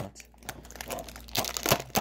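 Plastic packaging crinkling as it is handled, with a louder run of crackles in the last half second.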